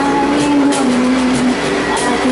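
Live acoustic guitar and cajon playing with a voice holding a long note that steps down partway through, over a steady low rumble.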